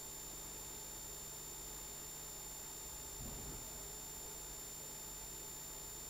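Faint room tone: a steady hiss with a low electrical hum and a thin high-pitched whine. A faint, brief low sound comes about three seconds in.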